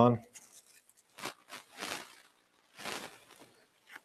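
Four short, faint rustling scrapes as a grid modifier is fitted onto a speedlight flash head.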